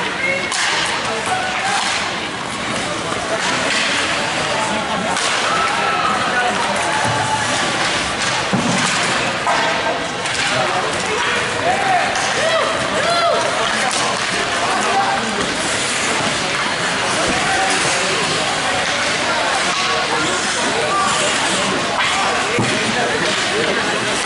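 Ice hockey play in a rink: skates scraping the ice, with repeated sharp clacks and thuds of sticks and puck against sticks and boards. Spectators and players call out throughout.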